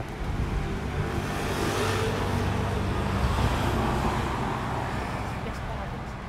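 A motor vehicle passing along the street: engine and tyre noise swell over the first couple of seconds, peak mid-way and fade toward the end.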